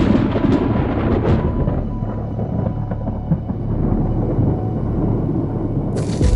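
Thunder: a sharp crackling clap at the start that rolls into a long low rumble, over a dramatic music soundtrack.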